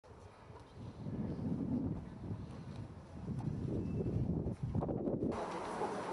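Wind buffeting an outdoor microphone: an uneven, gusting low rumble. About five seconds in it gives way abruptly to a steadier, fuller background.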